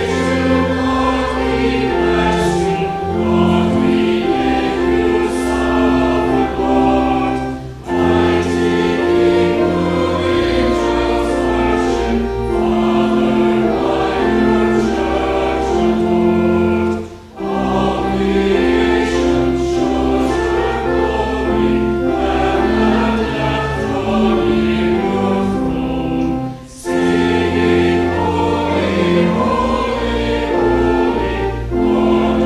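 Choir and congregation singing a hymn in sustained, held notes over a low organ accompaniment. The singing breaks off briefly three times, roughly every nine or ten seconds, between lines.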